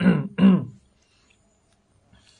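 A man clearing his throat, twice in quick succession, over within the first second.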